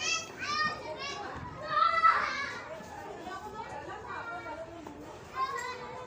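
Young children's high-pitched voices as they play, with a loud shout about two seconds in and another shorter one near the end.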